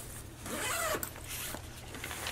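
Zipper of a Norazza Ape Case ACPRO1700 camera sling backpack being pulled open in one quick run of about half a second, followed by a couple of light clicks.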